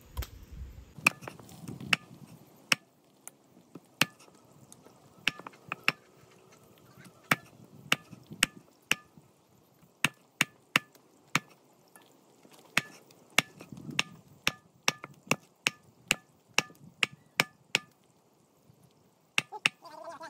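Heavy knife chopping meat on a wooden block: repeated sharp chops, uneven in spacing but about two a second, with a short pause near the end.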